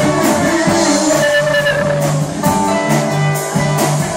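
Live rock music played loud: electric guitar over a steady drum beat.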